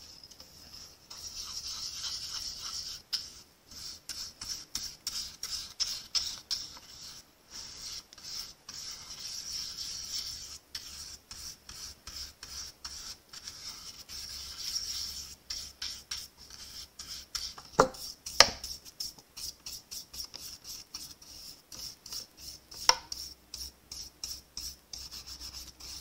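A stiff, large round paintbrush scrubbing and sweeping flakes of gold gilded leafing across a glued cardstock panel, in quick, repeated, rasping strokes. A few sharper taps come in the last third.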